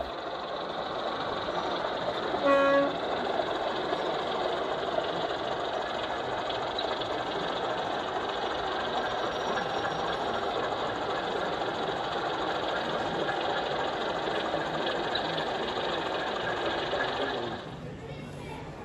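Steady crowd chatter in an exhibition hall, with one short horn toot about two and a half seconds in from a sound-fitted 7mm O gauge model diesel locomotive.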